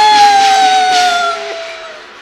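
Cantonese opera song performed with a Chinese orchestra: one long held note slides slowly down in pitch and fades near the end, over a lower steady note that stops a little before it.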